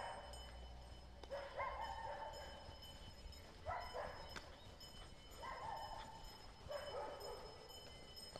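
A dog barking faintly, about five drawn-out barks spaced a second or two apart.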